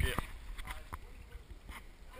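A few light knocks and a brief low rumble from a handheld action camera being moved about, settling to a faint background.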